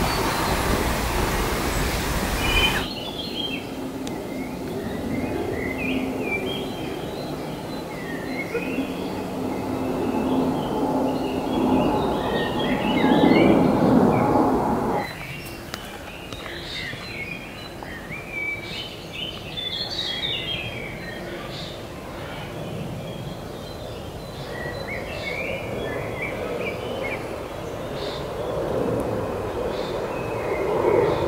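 Small birds chirping and calling throughout, over a low rumble that swells to its loudest about halfway and then stops suddenly. The first three seconds are covered by a loud rushing noise.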